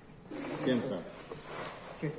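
A pigeon cooing: one short, low call about half a second in.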